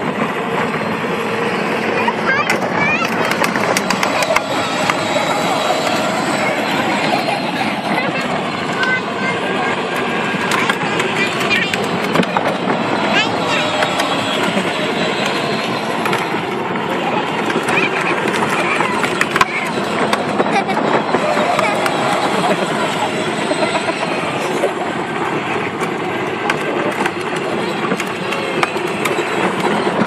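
Hard plastic wheels of a child's battery-powered ride-on toy Jeep rolling over asphalt, a steady rumble, with children's voices under it.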